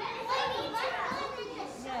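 Young children's voices talking.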